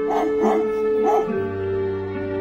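A small dog giving three short, high yips in quick succession, the excited cries of a dog running to greet its owner, over background music of held notes.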